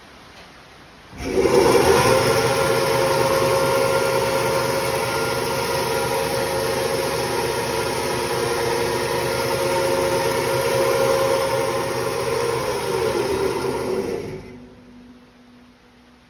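D-MA bandsaw switched on about a second in, its motor and blade running steadily with a strong steady tone and no workpiece being cut. Near the end it is switched off and runs down, the tone falling in pitch before the sound dies away.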